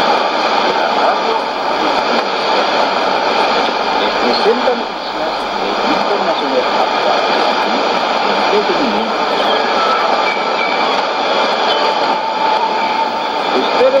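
Weak shortwave AM broadcast of Voice of Indonesia's Spanish service received on a Sony ICF-2001D tuned to 9525.9 kHz, heard through the receiver's speaker: steady static hiss with faint speech coming through the noise.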